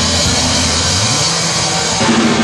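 Live rock band playing loud: distorted electric guitars and bass ringing over cymbal wash, with the steady drum beat largely dropping out for these seconds and a low bass note rising about a second in.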